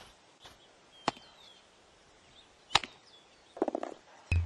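Cartoon golf sound effects: sharp club-on-ball clacks, one about a second in and a louder one near three seconds, followed by a quick run of small clicks near the end.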